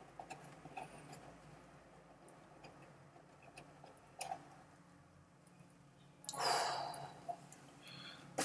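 Quiet handling of a cardboard box: a few faint taps, then, about six seconds in, a second-long rustle as the white inner box slides out of its green cardboard sleeve.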